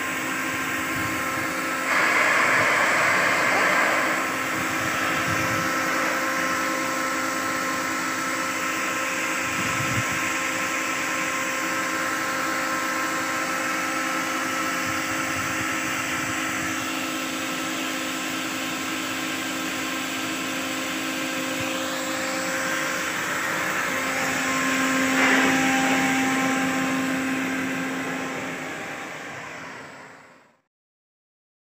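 Kaishan BK45 rotary screw air compressor running: a steady mechanical drone with a whine in it, over a hiss of air. A louder rush of air comes about two seconds in and lasts about two seconds, and the drone swells again for a few seconds near the end.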